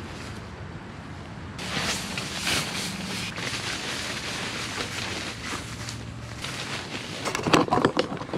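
Outdoor background with wind on the microphone and a low engine hum that swells about two seconds in and fades away, with a few sharp clicks near the end.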